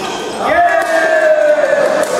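Court-shoe squeak on a gym floor: a drawn-out high squeal about a second long that starts suddenly about half a second in and slowly drops in pitch.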